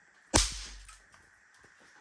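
A snap pop (bang snap) thrown against a wall goes off with one sharp crack about a third of a second in, trailing off over about half a second.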